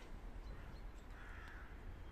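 A single harsh bird call, a caw, a little over a second in, faint over a steady low rumble.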